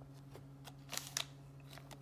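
Trading cards being handled and slid through the fingers: a few short, soft snaps and clicks of card stock.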